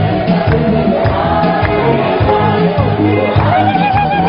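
Choir singing a hymn with many voices over a steady low beat. Near the end a high, wavering voice comes in and holds a note above them.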